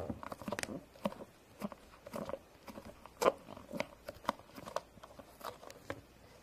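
Plastic play dough molds and tools handled on a tabletop: irregular light taps, clicks and squishes, the loudest about three seconds in.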